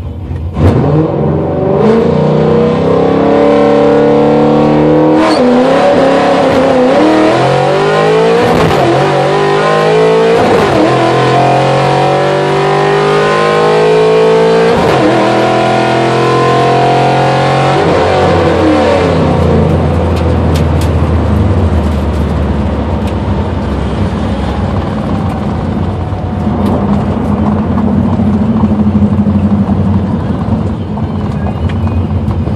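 A 2005 Pontiac GTO's 6.0-litre LS2 V8, with an aftermarket cam and running on E85, launching at full throttle for a quarter-mile drag pass, heard from inside the cabin: about a second in the engine note jumps up, then climbs through the gears with several upshifts that each drop the pitch. About eighteen seconds in the throttle is lifted and the engine falls to a low drone as the car coasts down.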